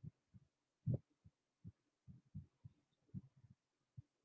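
Near silence: room tone with faint, irregular low thumps, about a dozen of them.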